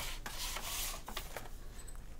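A cardboard-backed plastic blister pack of a Hot Wheels die-cast car being handled: a brief rubbing scrape in the first second, with a few light clicks of plastic.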